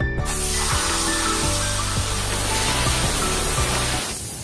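Compressed-air blow gun hissing in one steady blast as it blows engraving dust off a motorcycle rim, starting a moment in. Background music plays underneath.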